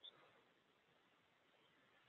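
Near silence: faint steady hiss, with one brief faint high blip at the very start.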